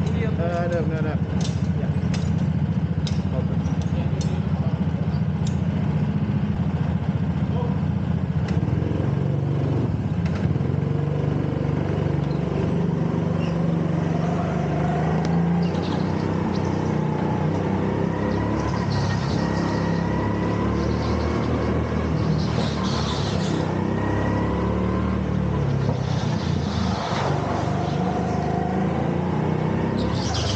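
Go-kart engine running and being driven, its pitch rising and falling with the throttle, with short hissing bursts in the second half.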